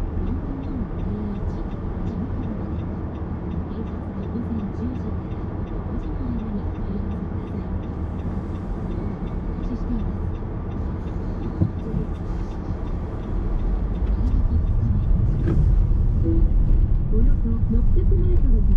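Road noise of a car driving slowly through city streets, heard from inside: a steady low rumble from the engine and tyres, with faint voices in the background. There is one sharp click about twelve seconds in, and the rumble grows louder shortly after.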